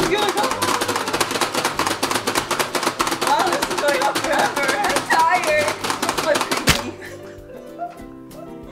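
Rapid clicking and knocking of two players slamming the plastic buttons of a Pie Face Showdown game, with shrieks and laughter over it. About seven seconds in there is one sharp smack as the spring-loaded hand fires, then only music.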